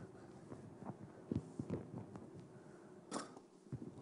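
Faint scattered knocks and rustles, with a louder rustle about three seconds in, from a handheld microphone being handled as it is carried to a questioner.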